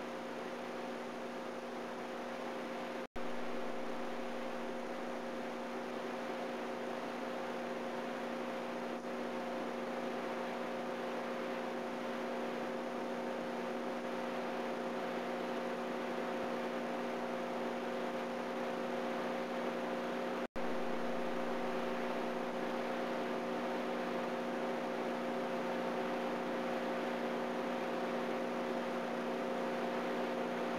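Steady electrical mains hum with a layer of hiss on the soundtrack of an old video transfer, with no music or voice. The sound cuts out completely for an instant twice, about three seconds in and again about twenty seconds in.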